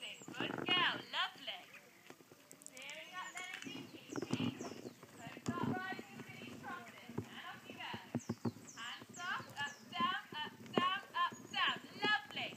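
Hoofbeats of a pony being ridden on the arena surface, mixed with voices talking.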